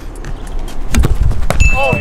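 A football kicked in a penalty: a sharp thump about a second in, another knock about half a second later, then a brief high ringing tone.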